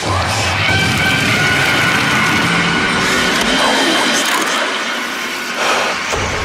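Dubstep track intro: dense, noisy electronic sound design with sweeping synth effects over steady high synth tones. The low bass falls away about four seconds in, then returns at the end.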